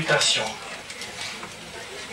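A person's voice finishing a word through a microphone, then a pause filled only by low, steady room noise.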